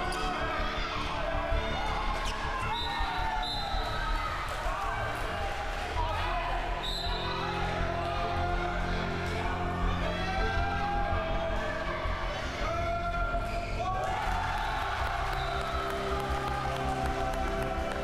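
A handball bouncing on a wooden sports-hall floor again and again during play, with players' voices calling out across the hall.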